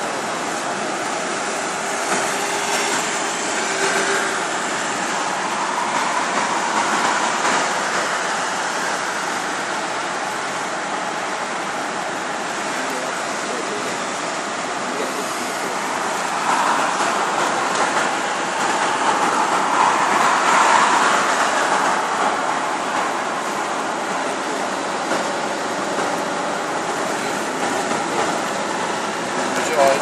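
Steady road and wind noise of a moving car, heard from inside it, rising and falling a little with speed.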